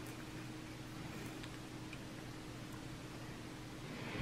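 Quiet room tone: a faint steady hiss with a low hum underneath.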